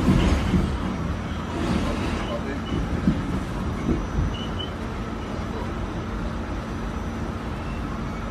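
Subway car running: a steady rumble and rattle of the train heard from inside the car. A low steady hum joins about halfway through.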